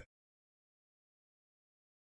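Silence: the sound track is blank, with no room tone or hiss.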